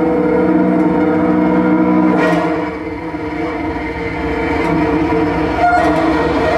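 Bowed cello playing a dense, sustained drone of several held tones. About two seconds in, the lower tones drop away with a brief rasping swish. The sound thins, then swells again toward the end.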